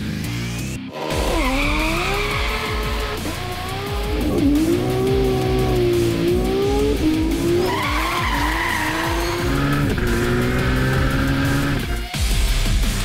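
Car engine accelerating hard, heard from inside the cabin over heavy rock music. Its pitch climbs and falls back several times, as at gear changes.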